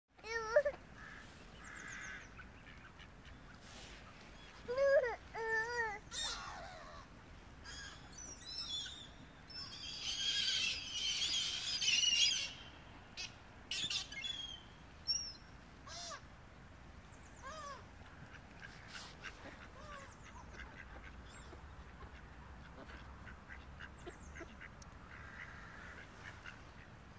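Mallard ducks quacking and gulls calling in short bursts. There is a run of three quacks about five seconds in and a dense cluster of calls from about ten to twelve seconds.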